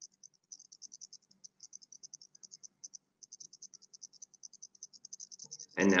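Faint, high-pitched insect-like chirping: a fast trill of about eight pulses a second with a brief break about three seconds in, over a faint low hum. A man's voice starts near the end.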